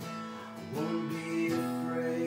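Acoustic guitar strummed slowly under a man singing a worship song, his voice rising into a held note just under a second in.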